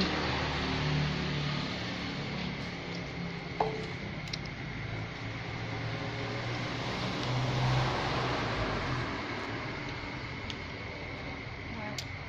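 Steady background noise with a low hum, a single short click about three and a half seconds in, and faint distant voices swelling briefly near eight seconds.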